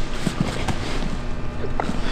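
Two grapplers shifting their bodies on a foam gym mat: a few soft knocks and rustles over a steady low hum.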